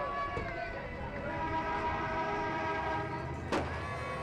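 Several horns held on together in a busy street, their steady tones overlapping, over a background of crowd voices. A single sharp crack sounds about three and a half seconds in.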